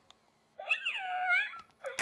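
Animatronic Baby Yoda toy giving one high-pitched cooing call, about a second long, starting a little past half a second in; the call dips in pitch and rises again.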